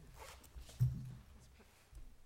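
Rustling and handling noise at the panel table, with a short, louder low sound a little under a second in.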